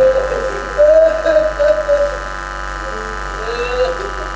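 A man's amplified voice through a microphone, reciting in long, drawn-out, wavering tones in the manner of a chant, over a steady high hum from the sound system.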